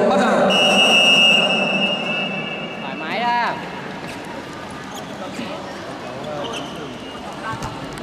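A loud, long high-pitched signal tone, held steady for about two and a half seconds, marks the start of a wrestling bout. Voices sound under it, a short shout comes right after it ends, and then low background chatter follows.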